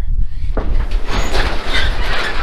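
A sectional garage door rolling up its tracks, a rattling rumble that starts with a clunk about half a second in.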